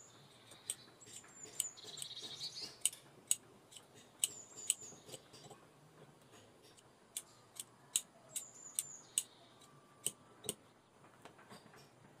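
Large steel shears cutting leather: a run of sharp snips, a short pause, then a second run of snips. Short high squeaky chirps come with some of the cuts.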